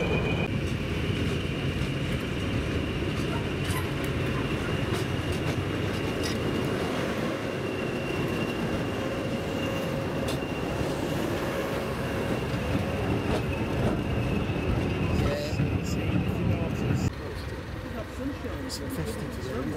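British Rail Class 20 diesel locomotive running as it passes close along the platform: a steady engine rumble with a constant high whistle over it. The sound drops off abruptly about a second before the end.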